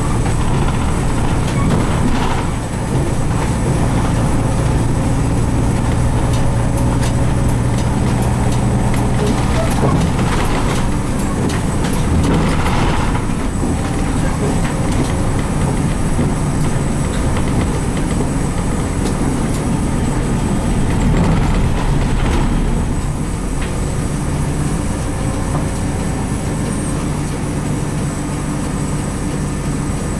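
Inside the cabin of a Nissan Diesel RM route bus, its FE6 diesel engine runs under way with road noise. The engine note dips briefly about two and a half seconds in, and the sound drops in level from about 22 s as the bus slows to a stop.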